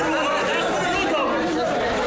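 Crowd chatter: many voices talking over one another at a steady level.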